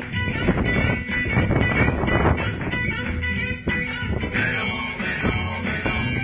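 Rock and roll dance music with guitar and a steady beat.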